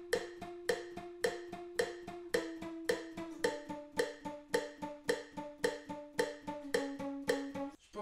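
Steel-string acoustic guitar picked in a steady repeating arpeggio, an accented note about twice a second with lighter notes between, over a held note that steps down in pitch a few times. The playing stops just before the end.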